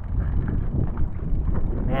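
Wind buffeting the microphone of a handheld GoPro: a steady, gusting low rumble.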